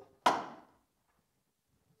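A single short knock about a quarter of a second in, dying away within half a second, then near silence.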